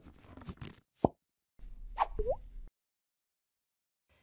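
Cartoon sound effects for an animated logo: a pop at the start, another pop about a second in, then a swish with a short rising whistle.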